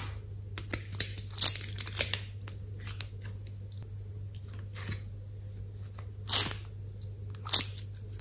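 Thin clear plastic slime molds crinkling and crackling in the hands as glossy slime shapes are peeled out of them, in short bursts with light clicks between; the loudest come about one and a half and two seconds in, and again past six and seven and a half seconds.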